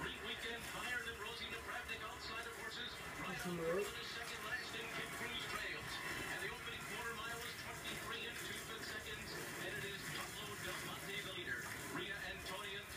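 Horse-race commentary from a television broadcast: the announcer's continuous race call heard through the TV's speaker in a small room.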